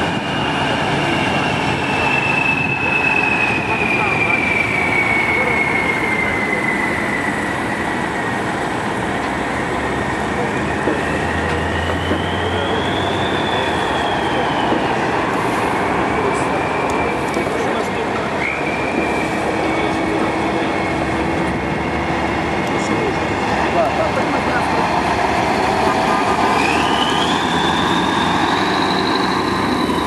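Heavy military KrAZ trucks passing close by in a column, their diesel engines running loudly and steadily, with high whines that slowly fall and rise as they go by.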